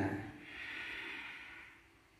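A man's long audible exhale, a breathy hiss lasting about a second and a half, as he breathes out while bending forward in a seated yoga forward fold.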